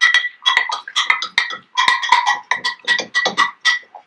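Paintbrush rinsed in a glass jar of water, knocking against the glass in a fast run of clinks, about five a second, with a steady glassy ring; it stops just before the end.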